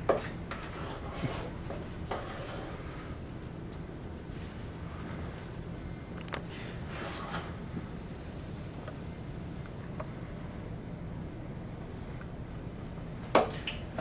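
Pancake batter being poured from a metal mixing bowl onto hot griddles: a sharp clink at the start, then a few soft knocks and short pouring sounds over a steady low hum.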